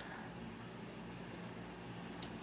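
Faint, steady hiss of a Lenovo Yoga 720 laptop's cooling fan running under a full FurMark GPU load, barely audible even so.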